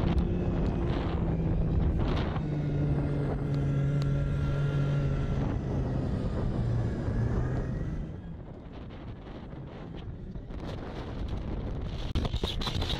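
Snowmobile engine running under way, with wind buffeting the microphone. About halfway through, the engine's hum eases down in pitch, and after about eight seconds the sound drops in level.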